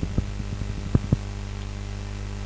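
Steady electrical mains hum on the recording, with three short clicks, two of them close together about a second in.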